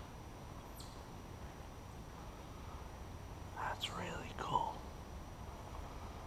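A person's soft, hushed voice about four seconds in, over quiet woodland background with a low steady rumble. A brief thin high chirp, falling in pitch, comes about a second in.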